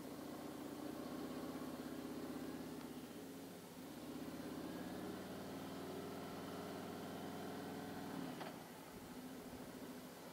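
Harley-Davidson Street Glide's V-twin engine running at low speed, idling at first and then pulling away, with a single sharp click about eight and a half seconds in.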